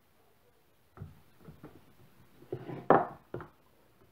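Kitchen knife knocking on a wooden cutting board as it cuts through a bar of homemade orange Turkish delight, with several separate knocks and the loudest near the end.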